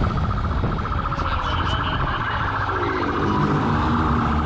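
Police motorcycle siren sounding a steady, rapidly pulsing high tone over the bike's engine running underneath.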